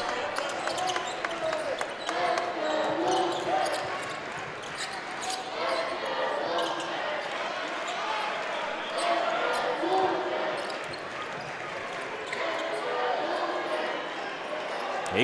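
Basketball dribbled on a hardwood court in an arena, a string of short bounces, with voices calling in the background.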